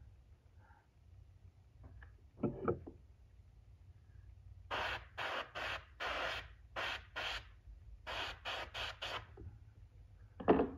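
An airbrush spraying paint through a comb held against a lure in about ten short, quick hissing bursts, starting about halfway through. The stop-start spraying lays down vertical bars through the comb's teeth.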